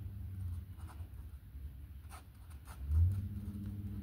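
Pen writing on paper in a few short, quiet strokes over a low steady hum.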